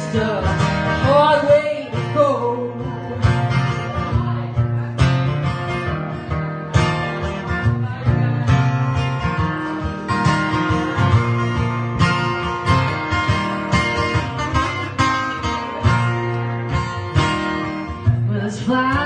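Acoustic guitar strumming chords in a steady rhythm, playing an instrumental passage of a country-folk song live.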